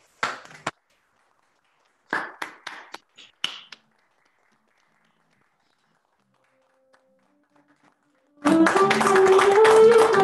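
A few short taps in the first few seconds, then about eight and a half seconds in a saxophone and an acoustic guitar start playing together loudly, the saxophone carrying a wavering melody over the guitar, with people clapping along.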